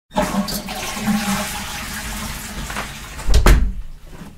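A toilet flushing: a steady rush of water, with a loud thump near the end before it cuts off.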